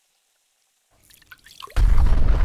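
Cartoon sound effects: a few small liquid drips, then, near the end, a loud sudden boom, heaviest in the bass, that starts to die away.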